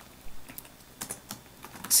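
Typing on a computer keyboard: a short run of separate, irregularly spaced keystrokes.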